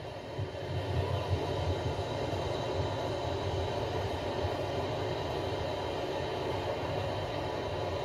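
A mudflow torrent of muddy water and debris rushing down a street: a steady, low rumbling rush without break, heard re-recorded from a screen's speaker.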